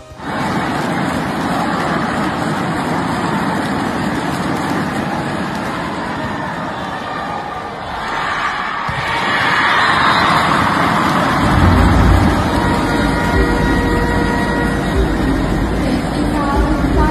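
Crowd noise in an indoor sports hall during a volleyball match: a steady din of many spectators. It swells about ten seconds in and takes on a heavy low rumble for the rest of the stretch.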